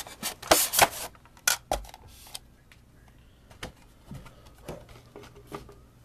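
Diecast car packaging being handled as the top piece of the box comes off: a burst of rubbing and scraping in the first second or so and a few more strokes shortly after, then scattered light clicks.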